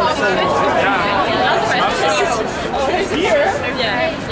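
A small group of people chattering, several voices overlapping so that no words stand out.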